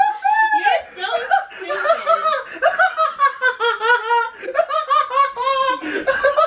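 A woman laughing hard, in a long unbroken run of quick, high-pitched bursts of laughter.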